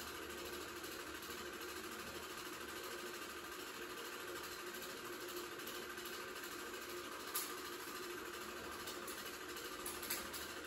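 Home-movie film projector running with a steady mechanical whir, and one sharp click about seven seconds in.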